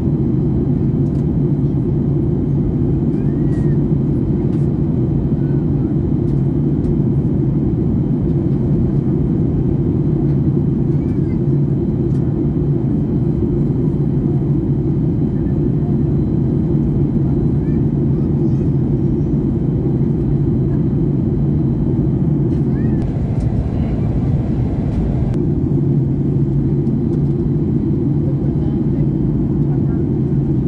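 Steady cabin noise of a Ryanair Boeing 737 in flight: the low drone of the engines and airflow with a strong, even hum, unchanging throughout. A brief hiss rises over it about three-quarters of the way through.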